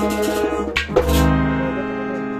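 Harmonium music over a percussion beat. The beat breaks off just under a second in with a quick downward swoop, leaving a held harmonium chord.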